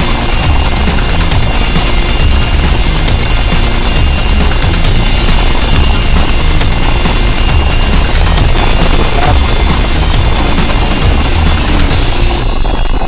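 A 4x4 driving along a rough desert dirt track, its engine and road noise loud and steady throughout.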